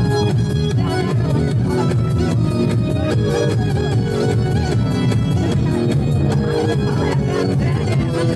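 A live band playing an instrumental interlude, with drums keeping a steady beat under a melodic lead line.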